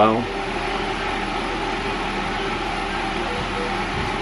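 Steady background hiss and hum from a running machine, the kind of even noise an air conditioner or fan makes, holding at one level throughout.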